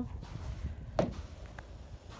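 Low, gusting rumble of wind on the phone's microphone during a snowfall, with a single sharp click about halfway through and a fainter one after it.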